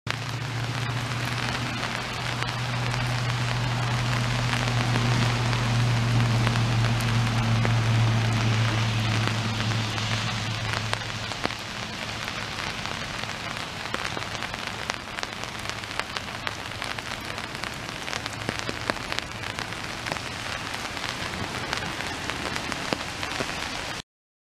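Steady rain falling on a lake and its shore, a dense patter of fine drops. A low steady hum runs underneath for the first half, louder around the middle, then fades out.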